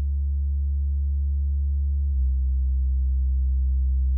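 Presonus Eris E3.5 studio monitors playing a steady 70 Hz sine test tone with faint overtones above it, which steps down to 65 Hz about two seconds in.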